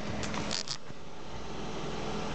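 Steady background hum, with a few short, sharp clicks or scrapes about half a second in.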